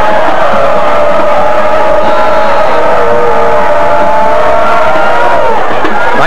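Band in the stands holding one long sustained chord over crowd noise and cheering as the kickoff is made; the chord cuts off about five and a half seconds in.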